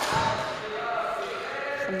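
A single sharp smack of a badminton racket striking a shuttlecock right at the start, followed by faint voices carrying in the hall.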